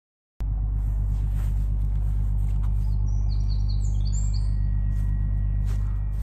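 A steady low rumble with a hum, like distant machinery or traffic, starts about half a second in after a moment of silence. A small bird chirps a quick run of short high notes about three seconds in.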